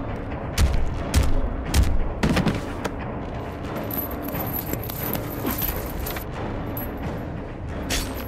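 Revolver shots in a film soundtrack: about five sharp shots roughly half a second apart in the first three seconds, followed by a thin high ringing tone.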